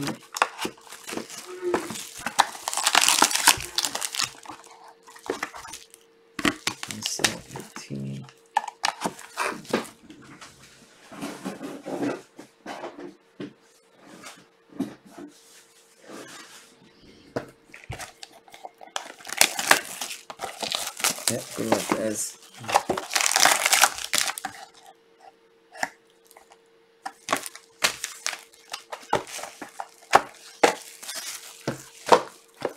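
Plastic shrink-wrap being torn and crumpled off sealed trading-card boxes, in several loud bursts of crinkling, with knocks and clicks from handling the boxes in between. A faint steady hum runs underneath.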